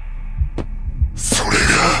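Deep, slow bass thumps over a steady low hum in the soundtrack of a dramatic TikTok edit. A voice comes in a little past halfway.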